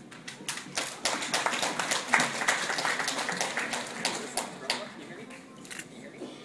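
A small audience clapping: many hand claps together that thin out and die down near the end.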